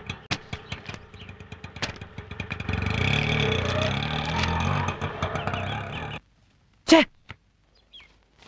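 Auto-rickshaw engine running with a wavering pitch, stopping abruptly about six seconds in, after a run of light clicks. A single short spoken exclamation follows near the end.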